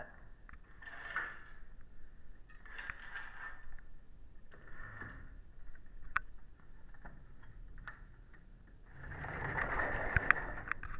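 Faint swishing and scraping of sheer curtains being pulled back along their rod, several times, with a few light clicks about six seconds in. Near the end a louder rush of noise builds as the sliding glass door onto the balcony is opened.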